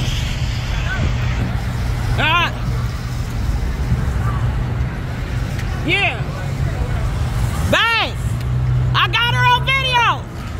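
Steady low rumble of street traffic, with a person shouting short, rising-and-falling calls about two, six and eight seconds in and a longer run of shouts near the end.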